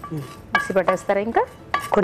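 A spatula clinking and scraping against a frying pan as roasted nuts and spices are tipped from it into a mixer jar, with a voice talking over it.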